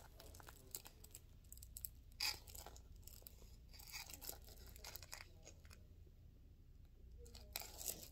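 Faint plastic packaging being handled and picked at: intermittent crinkling with a few short tearing crackles, the clearest a little after two seconds in and near the end.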